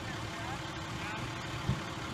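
Steady low rumble of a vehicle engine running, with faint voices over it and a short low thump near the end.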